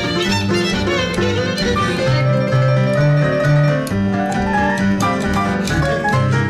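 Small jazz band playing: violin leading over piano and plucked double bass, with one sliding violin note near the end.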